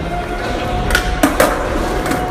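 Skateboard wheels rolling on a concrete floor, a steady low rumble, with a few sharp knocks about a second in.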